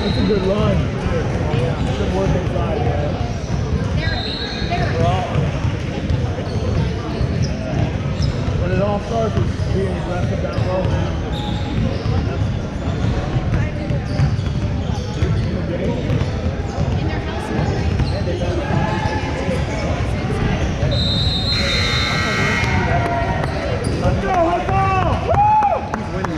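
Several basketballs bouncing on a hardwood gym floor during shoot-around, with voices echoing in the hall. Near the end a high-pitched tone sounds for about a second and a half.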